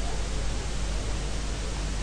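Steady hiss with a low hum underneath: the background noise of the recording microphone, with no other sound.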